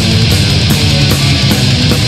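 Heavy metal band recording from a 1995 demo: loud distorted guitars and bass over drums, with cymbals struck about twice a second.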